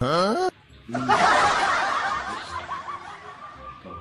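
A short rising glide, then a burst of laughter lasting about two and a half seconds.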